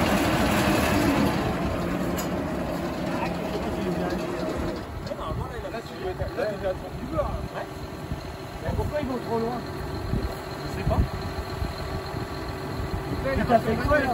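A new tractor-driven baler running, its mechanism turning with a loud, steady mechanical sound. After about five seconds this gives way to a tractor idling, quieter, with men's voices over it.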